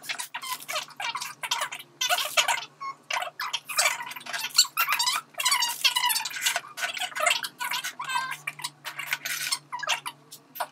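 Cardboard food boxes, plates and plastic packaging being slid around and set down on a wooden table: a busy run of short knocks, scrapes and rustles.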